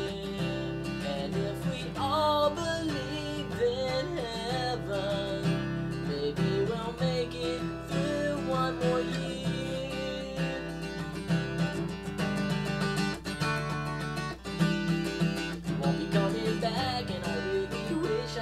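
Acoustic guitar strummed steadily in a pop-punk ballad rhythm, with a man's voice singing over it in stretches.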